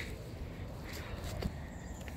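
Quiet outdoor background with a low, even rumble and a faint click about one and a half seconds in.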